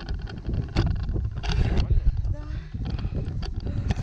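Wind rumbling on a handheld camera's microphone, with clicks and rustles from handling the camera and the paragliding harness gear.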